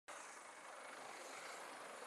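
Faint, steady rushing noise of a large twin-engine helicopter in flight.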